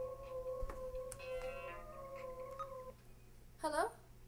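An animal's howl held on one pitch for about three seconds, then a short yelp near the end.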